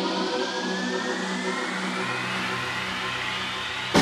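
Deep house DJ mix in a drumless breakdown: sustained synth chords under a steadily rising sweep that builds toward the drop. A sharp hit right at the end brings the drums back in.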